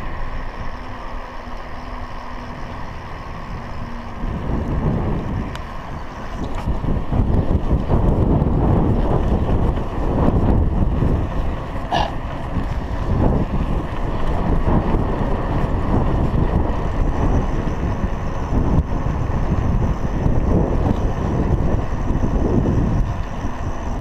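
Wind buffeting the action camera's microphone while riding a bicycle along a paved road, gusting and growing loud from about four seconds in. A short ringing tone sounds once about halfway through.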